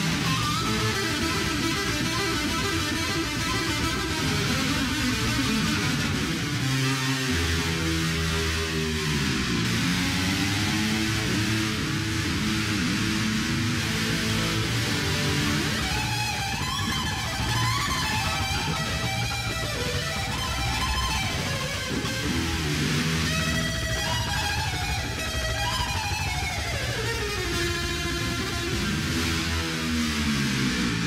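Electric guitar played solo in a heavy-metal shred style: chugging rhythm riffs first, then fast lead lines higher up the neck from about halfway, with a long descending run near the end.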